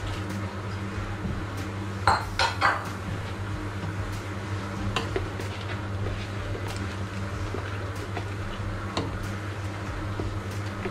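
Kitchenware knocking against a large stainless steel stockpot: three sharp knocks about two seconds in as carrots are tipped from a glass bowl, then lighter scattered clinks of a ladle stirring a thick, creamy soup. A steady low hum runs underneath.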